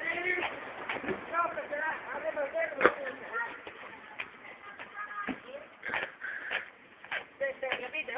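Distant, indistinct voices talking and calling, with a few sharp knocks, the loudest about three seconds in.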